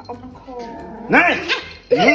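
Small long-haired puppy vocalising: a drawn-out whine that falls in pitch, then a couple of short, loud, high yelps a little after a second in.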